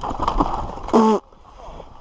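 Trek Session 9.9 downhill mountain bike running down a dirt trail: tyre and chassis noise with wind rushing on the helmet camera, dropping off suddenly a little past one second in. A short voiced shout from the rider comes about one second in.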